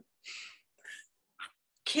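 Three short breathy puffs, the first the longest, like a person's soft exhales or a quiet laugh, with silence between them. A woman starts speaking near the end.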